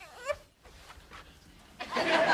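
A baby gives a short, soft whimper near the start, its pitch falling.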